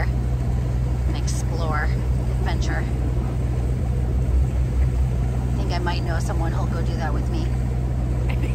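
Steady low drone of a boat's engine running under way, with snatches of quiet talk over it twice.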